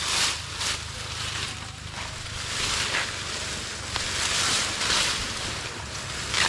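Dry banana leaves and brush rustling and crunching in several swells as they are pulled and hacked away with a machete, with a faint low wind rumble underneath.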